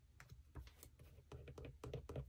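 Faint, irregular light clicks and taps of fingers and a pen-like tool pressing and smoothing paper stickers onto a spiral-bound planner page.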